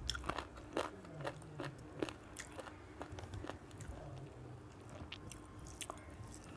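Close-miked eating sounds: chewing of a mouthful of chicken curry and rice, with irregular wet mouth clicks about once or twice a second. Fingers mixing rice on a steel plate.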